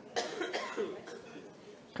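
A single cough shortly after the start, followed by faint, quiet voices.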